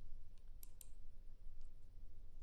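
A few faint, sharp clicks over a low steady hum: a pair of clicks a little under a second in and another near the end.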